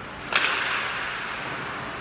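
A single sharp crack about a third of a second in, followed by a fading echo: a hit in ice hockey play, such as a stick striking the puck or the puck hitting the boards.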